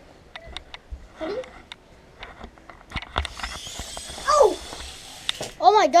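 A small toy quadcopter drone's motors whir for about two seconds, then cut off with a knock as it drops. Scattered light clicks come before it, and short children's voices and an excited shout come near the end.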